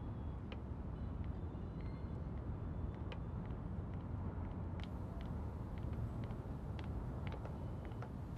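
Steady low rumble of city traffic, with a scattering of faint, light clicks.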